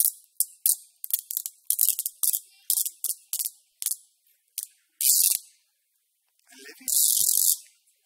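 Sellotape being pulled off the roll: a rapid run of short rips, then two longer pulls, the last and loudest near the end.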